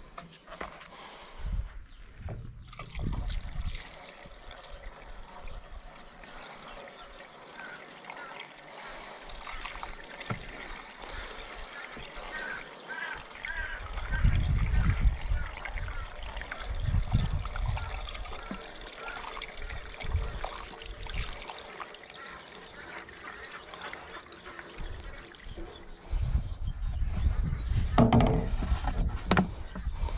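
Diesel fuel trickling and pouring from a plastic bottle through a plastic funnel into a tractor's fuel tank, heavier in stretches about halfway and near the end.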